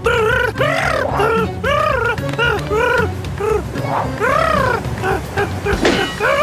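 A cartoon parrot character's voice crying out in a string of short squawks, each rising and falling in pitch, about two a second, as he is blown through the air by a strong wind. Background music plays underneath.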